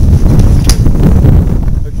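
Wind buffeting the microphone, a heavy low rumble, with one sharp click less than a second in.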